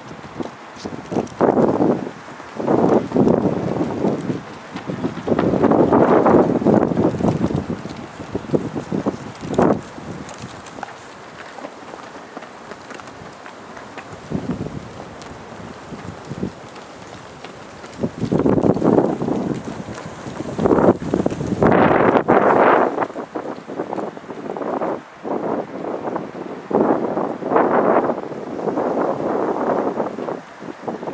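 Wind buffeting the microphone in uneven gusts, loud for the first several seconds, easing off in the middle, then gusting strongly again.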